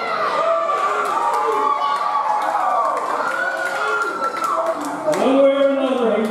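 A man speaking into a microphone over the arena's sound system, drawing out his words, with the crowd cheering and clapping.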